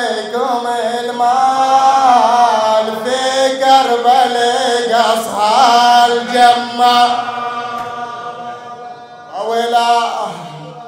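A man's solo voice chanting a mournful Arabic elegy into a microphone, holding long notes with wavering ornaments. It dies away about eight seconds in, then a short new phrase starts near the end.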